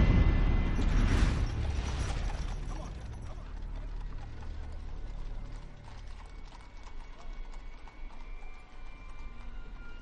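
Film soundtrack street ambience: a deep rumble and whoosh in the first two seconds that fades, then a quieter night-street background with scattered irregular clicks and knocks.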